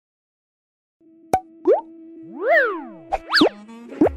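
Intro jingle of cartoon-style sound effects, starting about a second in: a sharp click, then quick swooping pitch glides, one rising and falling, over a steady low held note.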